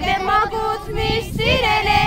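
A group of children and women singing together.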